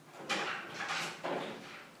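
An interior glass-paned door being opened, a few short knocks and rattles.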